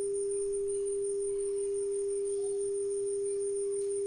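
A multimedia speaker playing a steady 400 Hz sine tone from a smartphone function-generator app, one unchanging pitch.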